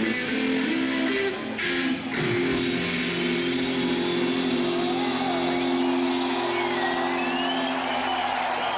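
Live electric guitar playing the close of an instrumental, settling about two and a half seconds in onto a held chord that rings on. From about halfway, high audience whistles slide up and down over it.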